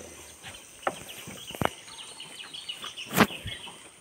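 Quiet outdoor ambience on a river, with faint high chirping of wildlife from the forested banks. A few sharp knocks sound, the loudest about three seconds in.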